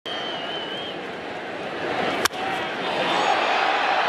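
Ballpark crowd noise, then one sharp crack of a wooden bat hitting the pitched baseball about two seconds in, after which the crowd noise swells.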